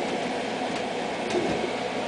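Water running steadily into an aquarium surge tank from a pump-fed PVC return line as the tank fills, with a light knock about one and a half seconds in.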